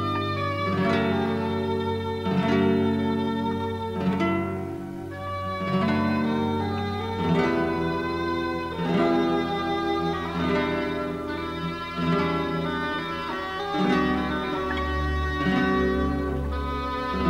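Background music: a classical guitar playing a flowing line of plucked notes over long sustained low notes from an accompaniment.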